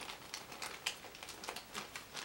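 Small plastic zip bag crinkling in the fingers as it is opened, a scatter of quiet crackles and ticks.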